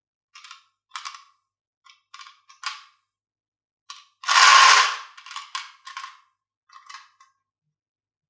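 Glass marbles clinking and rattling against each other inside a small clear jar as the hand shakes it, in short bursts, with one longer, louder rattle about four seconds in.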